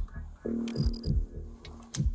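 Background music: a low, throbbing beat at about two pulses a second under a held, humming drone that comes in about half a second in.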